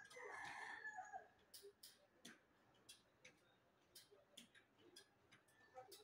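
An animal call lasting about a second at the start, then near silence with faint, irregularly spaced clicks.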